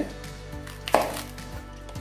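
A kitchen knife cutting once through the stem of a lettuce leaf and striking the cutting board: one sharp knock about a second in.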